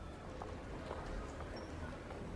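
Faint room tone: a steady low hum with a few soft, scattered clicks.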